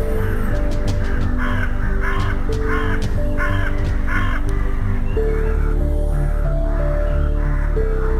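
A crow cawing about five times in quick succession in the first half, over background ambient music of long held notes that change pitch now and then. Faint high chirps of small birds run through it.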